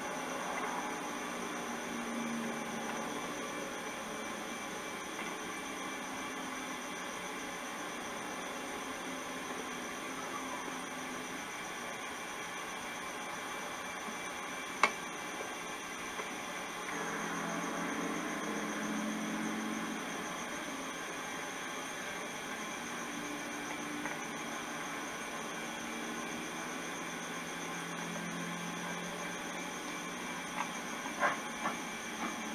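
Steady low hiss of background noise with a faint low murmur that swells a little at times, and a single sharp click about halfway through.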